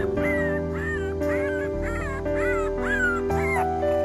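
Young puppies crying in a string of short high whines, each rising then falling, about two a second, over background music with held chords.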